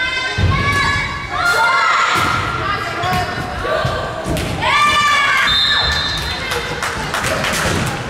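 A volleyball rally in a gym: dull thuds of the ball being struck and bouncing on the wooden floor, with short high-pitched squeaks and shouts from the players. Cheering rises as the point ends near the end.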